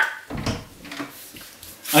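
An interior door being unlatched and swung open, heard as a few faint clicks and knocks.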